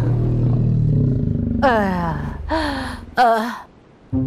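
A cartoon dugong giving three moaning cries over a low steady drone. The first two cries slide steeply down in pitch and the third wavers. They are the calls of an injured, very weak dugong.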